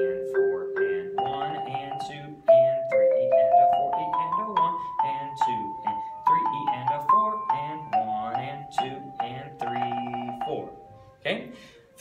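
Marimba played with soft mallets, a melodic line of arpeggios and a stepwise scale, with the notes climbing by steps about three to five seconds in and the line ending just before the end. A man's voice counts and calls notes along with the playing.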